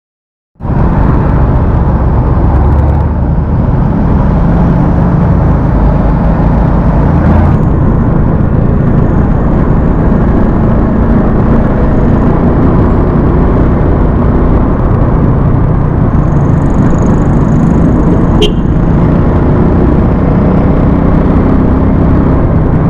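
Motorcycle riding at road speed, its engine rumble mixed with heavy wind noise on the camera microphone; the sound starts abruptly about half a second in and stays loud and steady.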